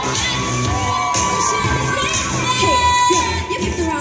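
Audience cheering and shrieking over pop music with a steady beat played through the stage sound system.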